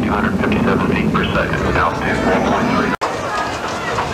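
Sound of old television footage of a space shuttle launch: a dense low rumble from the rockets with the voices of watching spectators over it, and a laugh near the end. The sound drops out for an instant about three seconds in, at an edit.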